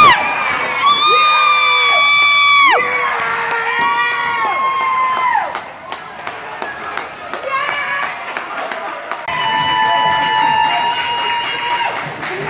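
Spectators at a youth ice hockey game cheering, with several long, high, held yells in the first five seconds and scattered sharp claps or knocks after them. A steadier high tone is held for the last couple of seconds.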